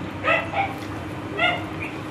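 A dog yipping twice: two short, high-pitched calls about a second apart.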